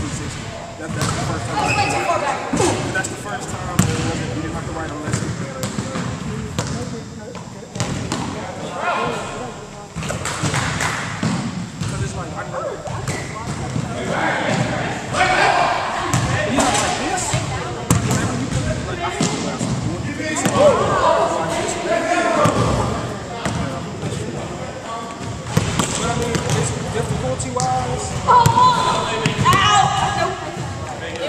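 Basketballs bouncing on a hardwood gym floor, irregular thuds scattered throughout, with players' voices calling out over them.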